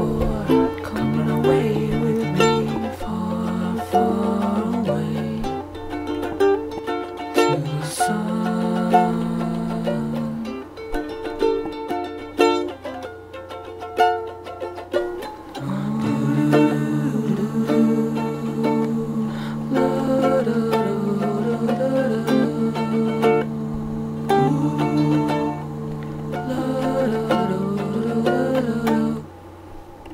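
Instrumental section of a song with no singing: a plucked string instrument playing chords and picked notes. About halfway through, long held low notes come in under it, and the music stops about a second before the end.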